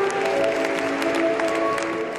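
Music with long held notes that shift in pitch, over a steady patter of audience applause.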